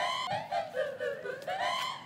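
A rapid series of short, high-pitched chattering notes, about four or five a second, each dipping in pitch, like high laughter.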